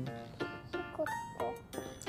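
Background music: a run of short melodic notes changing several times a second.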